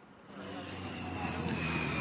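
Steady outdoor rumble from the reporter's live microphone, with a low hum, fading in about half a second in and growing louder as the remote feed's sound is opened up.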